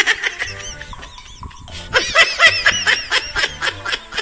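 Hearty laughter in quick repeated bursts: a short run at the start and a longer one from about two seconds in, over background music.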